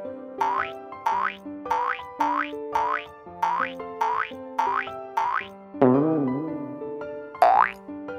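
Cartoon sound effects over light children's background music: a quick rising boing-like glide repeats eight times, a little under twice a second. Then comes a wobbling warble, and a single steep upward swoop near the end.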